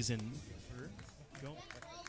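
Speech: a man's voice ends a phrase, then there is a quieter stretch with faint talk in the background.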